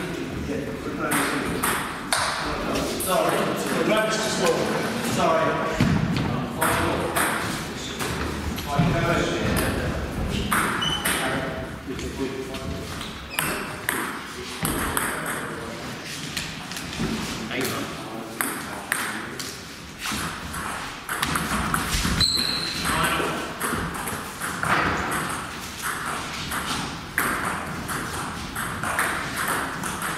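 Table tennis rallies: the ball clicks sharply and repeatedly off the bats and the table, in short runs of hits with pauses between points. People are talking in the background.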